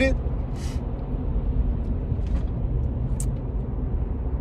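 Steady low road and engine rumble inside a moving car's cabin, with a brief hiss about half a second in.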